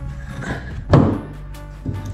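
A single wooden thunk about a second in: a wooden board set down on the boat's pine deck framing. Background music plays under it.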